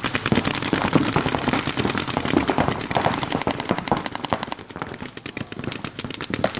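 Several paintball markers firing in rapid, overlapping streams of shots, a fast continuous popping at the opening of a paintball point.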